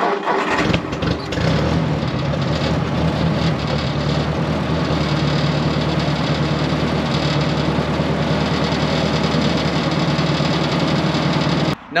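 Ford 641 Workmaster tractor's four-cylinder engine running steadily.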